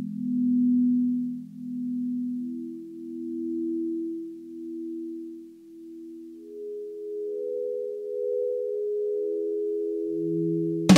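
Intro of a song: smooth, pure electronic tones held and layered, stepping up in pitch one after another into a rising chord, each note pulsing in and out about every second and a half.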